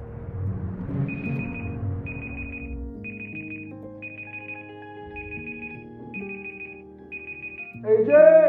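A mobile phone sounding a repeated trilling ring, short high bursts about once a second, over soft background music.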